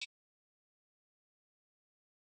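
Near silence: a digitally silent gap, cut into only by a very short burst right at the start.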